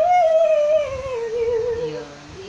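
A woman singing unaccompanied, holding one long note. The note scoops up into it at the start, then slowly sinks in pitch.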